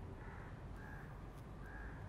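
Faint bird calls: three short calls, about half a second to a second apart, over a low steady background rumble.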